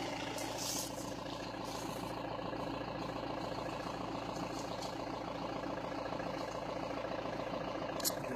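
A vehicle engine idling with a steady, even hum that does not rise or fall.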